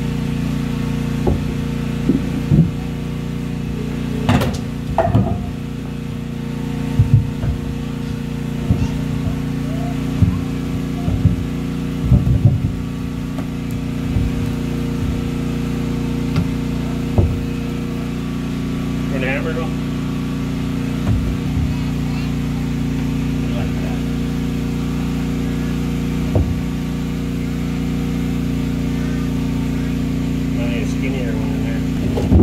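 Flat fieldstones knocked and scraped as they are set down and shifted on a wooden subfloor: about a dozen sharp knocks, the loudest about four seconds in. A steady low motor drone runs underneath.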